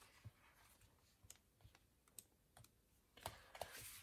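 Pages of a paper sticker book being leafed through: faint scattered ticks, then a short rustle of paper near the end.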